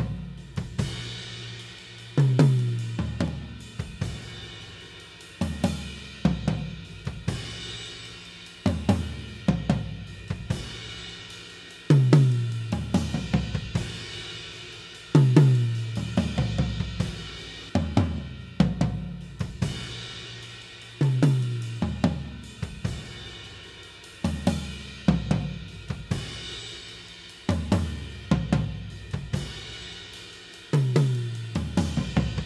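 Recorded drum kit played back through only its tom close mics and overhead mics: tom fills come round every three seconds or so, each tom stroke ringing and dropping in pitch, over cymbal wash from the overheads. The tom mics are heard first without, then partway through with, a sample delay that time-aligns them to the overheads, then without it again near the end.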